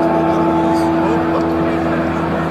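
Dense din of a football stadium crowd, with a single steady horn note held over it.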